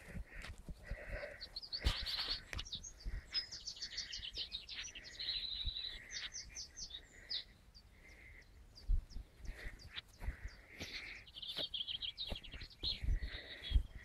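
Wild birds singing, with several overlapping chirps and trills and a soft note repeated about once a second. A few faint low knocks.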